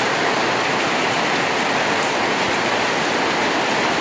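Steady, loud rushing hiss of heavy rain, even and unbroken throughout.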